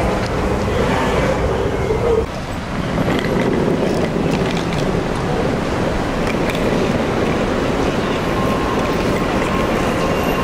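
Steady rushing noise of wind on the microphone mixed with traffic along a pickup lane, with a brief dip about two seconds in.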